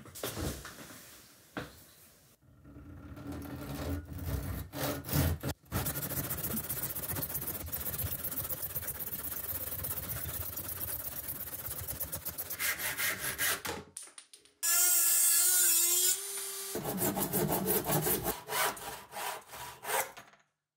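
Handsaw rasping through a wooden part clamped in a vise, stroke after stroke, as it is trimmed down bit by bit to fit. About two-thirds of the way through, a louder steady whine lasts about two seconds, then the rhythmic saw strokes resume.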